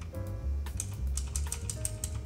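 Computer keyboard typing, a quick irregular run of key clicks that grows denser about a second in, over background music with a steady bass line.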